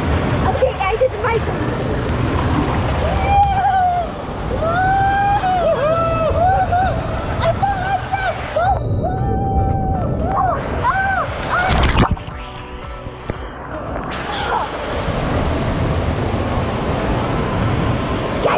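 Water park water splashing and running as a steady wash. A melody of held, arching notes runs through it from about three seconds in until a sharp knock near the twelve-second mark, after which it is briefly quieter.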